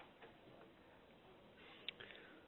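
Near silence: faint room tone with two small ticks, one just after the start and a sharper one near the end.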